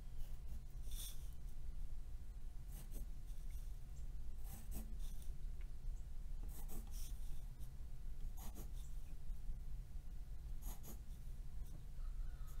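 Wooden pencil drawing along a ruler on paper: about six short strokes, a second or two apart, over a steady low hum.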